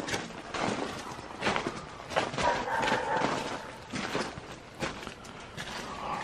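Footsteps crunching on gravel as people walk slowly in rubber boots, an irregular run of steps. Near the middle a dog gives a faint, drawn-out whine lasting about a second.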